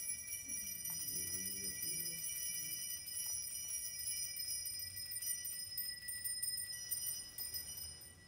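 Altar bells ringing at the elevation of the chalice during the consecration: a sustained, high, shimmering ring of several bell tones, with a few tones dying away and fresh ones sounding near the end before it stops.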